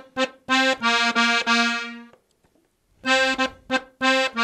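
Diatonic button accordion in F (FBbEb) playing a rhythmic figure in octaves on the treble buttons: short detached notes, then a longer phrase. It breaks off about two seconds in and starts again just before the end.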